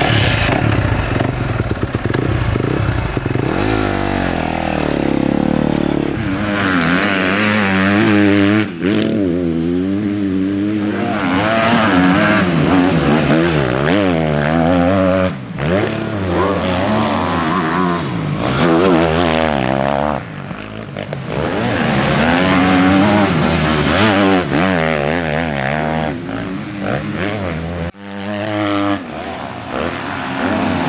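Kawasaki motocross bike's engine revving hard and dropping back again and again as it is ridden round a dirt track, its pitch climbing and falling with each throttle change. The sound breaks off sharply a few times.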